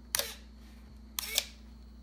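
Small hobby RC servo whirring briefly twice, about a second apart, as its arm swings against the switch that turns the hammer's electromagnet on.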